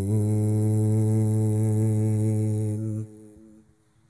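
A male qari's voice holding one long, steady note of melodic Quran recitation (tilawah) through a microphone and sound system. The note cuts off about three seconds in, and an echo dies away over the next half second.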